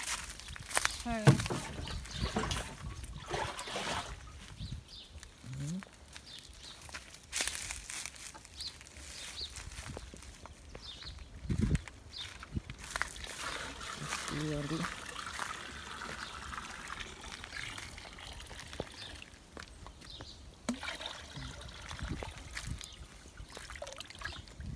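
Water pouring and trickling into a plastic bucket, with scattered knocks and handling clicks.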